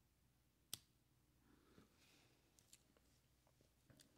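One sharp click a little under a second in: the Scott Archery Little Goose II wrist trigger release firing, its jaw snapping open at a light touch of a trigger set to short, touchy travel. A couple of very faint ticks follow; otherwise near silence.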